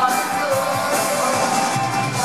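Live rock band playing at full volume: electric guitar and drums with a male lead vocal at the microphone.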